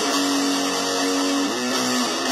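Electric guitar playing long held notes, sliding down to a slightly lower note about a second and a half in.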